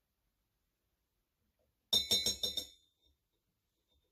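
A metal spoon clinking rapidly against a stainless steel cocktail shaker, a quick run of about five clinks with a short ring, about two seconds in.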